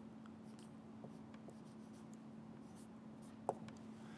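Dry-erase marker writing a word on a whiteboard: faint short strokes, with one sharper tick about three and a half seconds in.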